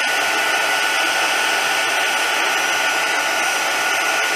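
Handheld craft heat gun running steadily, a constant blowing rush of hot air with a faint steady whine in it, held over gold embossing powder to melt it for heat embossing.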